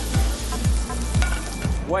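Shrimp sizzling in a hot frying pan over a gas flame as they are stirred with a wooden spatula. Under it runs background music with a steady beat of about two thumps a second.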